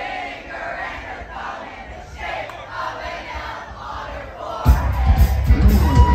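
Bar crowd singing along together while the band drops out, a mass of voices with no drums or bass beneath. About three-quarters of the way through, the full live rock band with drums, bass and guitars comes back in loudly.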